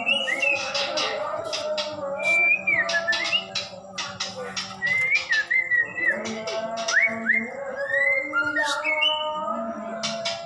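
White-rumped shama singing: loud whistled phrases that glide up and down in pitch, mixed with many sharp clicking notes.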